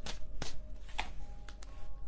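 Tarot deck being shuffled by hand, with several sharp clicks of cards striking one another, over faint background music.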